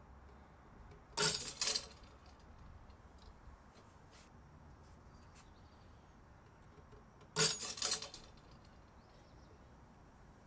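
3D-printed PLA test pieces snapping under tension, each break followed by the clink of the steel shackles and hooks springing free. There are two short clusters of sharp cracks and clinks, one about a second in and another about seven seconds in. The pieces fail at a low load that is too weak, a sign of poor layer adhesion that calls for a higher printing temperature.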